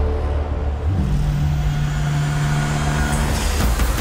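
Film trailer sound effects: a constant deep rumble with a steady, low horn-like tone from about a second in until near the end, then a few sharp hits.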